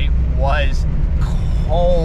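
Steady low rumble of a car's engine and road noise heard inside the cabin while driving, with the driver's voice breaking in twice.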